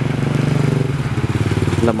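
Small motorcycle engine running at a steady speed, heard from the bike carrying the camera, with a fast, even pulse to its hum.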